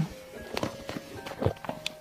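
Soft background music with a few short clicks and soft mouth sounds of eating: a spoon working in a plastic dessert cup and mouthfuls of creamy mochi dessert.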